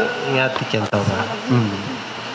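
A voice speaking in short, quiet phrases through a microphone and loudspeaker, with a buzzy tone, and a sharp click about a second in.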